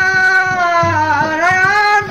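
Old Khowar folk song recording: a long held melodic note that dips in pitch about a second in and rises back, over a steady drum beat.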